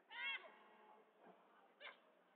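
Faint, short, high-pitched shouts: a louder one just after the start and a shorter one near the end, over the faint hum of a large hall.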